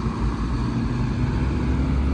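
Shacman dump truck's diesel engine running at low speed as the truck drives slowly past close by: a steady low engine note.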